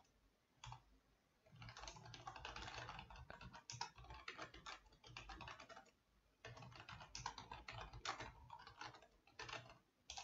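Faint computer keyboard typing: rapid keystrokes in two runs, starting about a second and a half in, with a short pause around six seconds in.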